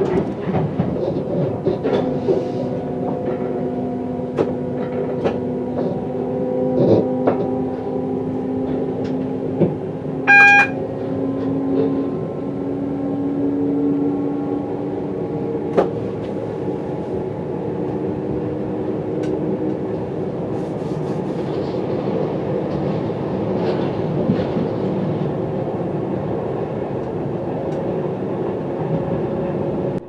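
London Overground electric multiple unit running along the line, heard from the driver's cab: a steady rumble with the traction motors' whine as several held tones that slowly glide, and wheels clicking over rail joints. A brief high-pitched tone sounds about ten seconds in.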